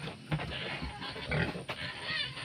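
Pigs grunting as they forage, a few short grunts about half a second apart.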